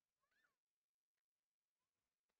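Near silence, with one very faint, brief squeak that rises and falls in pitch about a quarter of a second in.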